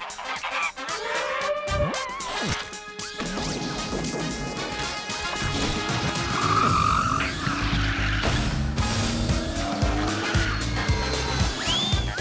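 Cartoon sound effects over music: sliding whistle-like glides and a few sharp knocks in the first three seconds, then a pulsing bass beat with a screech and crash-like hits like a cartoon car skidding.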